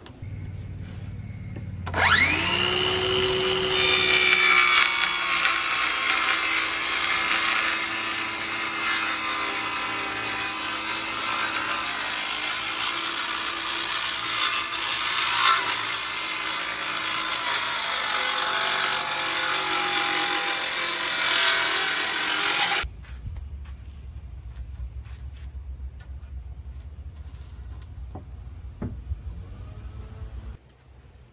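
Cordless circular saw whining up to speed about two seconds in, then cutting steadily through a weathered wooden board for about twenty seconds before cutting off suddenly.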